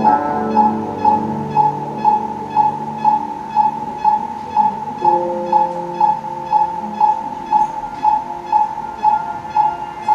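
EKG heart monitor beeping in an even rhythm, about two beeps a second, each a short high tone. Under it, sustained electronic keyboard notes hold a chord that changes about halfway through.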